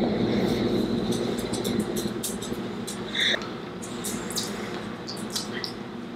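A steady hum made of several even tones, starting at once and slowly fading, with scattered light clicks and a brief higher-pitched blip about three seconds in.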